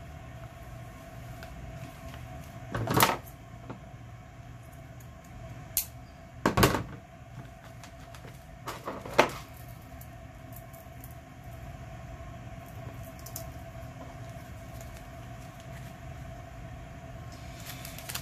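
Hands handling paper, lace and other craft materials on a tabletop, making a few scattered knocks and taps over a steady faint hum.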